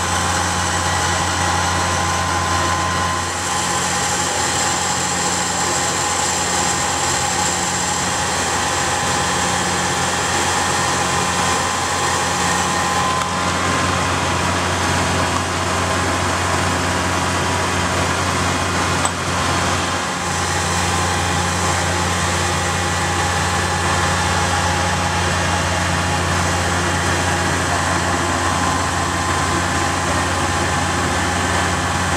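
Fire engine's motor running steadily at a fast idle to drive its water pump, feeding the connected hoses: an even, unbroken drone with a faint steady whine above it.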